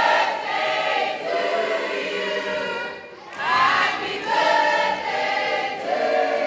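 A group of teenagers singing together in unison, in two phrases with a short break about three seconds in.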